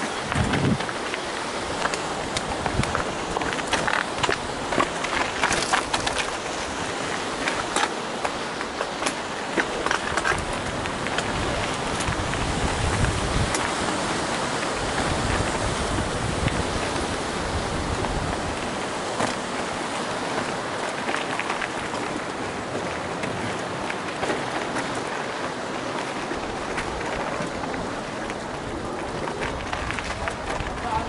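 Mountain bike rattling and knocking over a rough, stepped dirt path, over a steady rushing noise; the knocks come thickest in the first ten seconds or so and thin out after.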